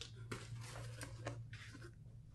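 Cardboard box and packaging being handled: faint, irregular rustling and scraping with a few light knocks as items are lifted out and the box is pushed aside.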